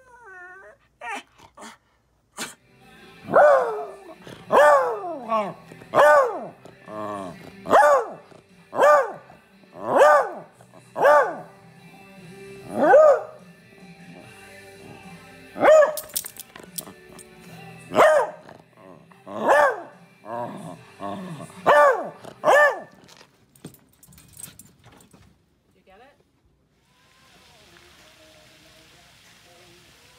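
Miniature beagle barking: a run of about fifteen loud barks, roughly one every second or so, over some twenty seconds. A short wavering whine comes at the start, and a faint steady hiss near the end.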